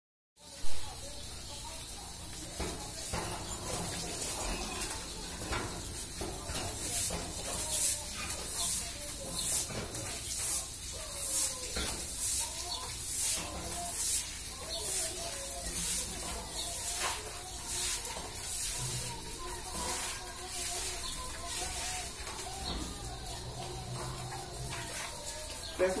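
A broom scrubbing a wet tiled floor in a steady rhythm of swishing strokes, a little under two a second, after a single sharp knock at the very start. Indistinct voices run faintly underneath.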